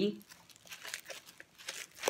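Faint, irregular crinkling of a metallic plastic bubble mailer being handled.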